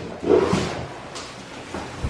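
A large cardboard furniture box being opened and handled: cardboard flaps rubbing and scraping, loudest about a third of a second in and fading after, with a couple of small knocks.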